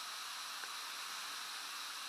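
Steady faint hiss with no distinct sounds: room tone and recording noise.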